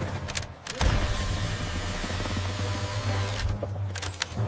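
Cartoon camera sound effect: a few clicks, then a steady motorised whir lasting about three seconds, and more clicks near the end as the camera readies a shot, over background music.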